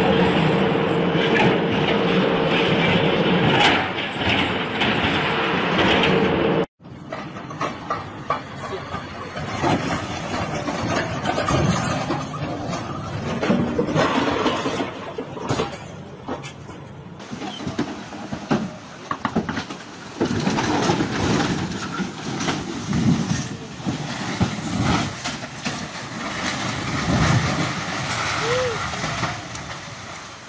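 A heavy machine's engine runs loud and steady for several seconds, then cuts off abruptly. After that comes uneven outdoor noise with voices.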